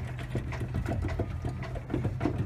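A motor running steadily with a low hum and a rapid, rattling pulse.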